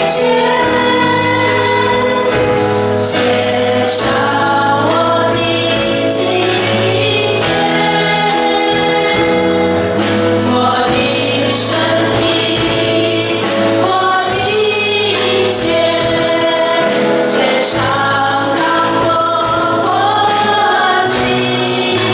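A small mixed group of women and men singing a Chinese-language Christian worship song together into microphones, over instrumental accompaniment with a steady bass line and regular percussion.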